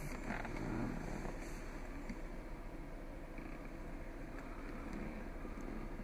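Low steady rumble and hiss inside a vehicle cabin, with a few faint rustles and clicks near the start.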